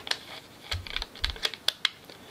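Irregular light plastic clicks and ticks from a 70mm film developing reel being handled as a strip of film is fed into its spiral, with a few soft low handling bumps.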